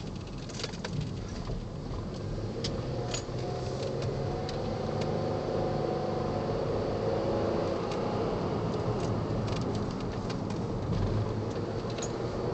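Inside the cabin of a 2010 Ford Flex with its 3.5-litre twin-turbo V6 under way: steady engine and road noise that grows louder over the first few seconds as the vehicle picks up speed, with a faint engine tone through the middle and scattered small clicks and rattles.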